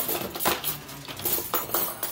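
Several irregular light clinks and clatters of small hard objects knocking together.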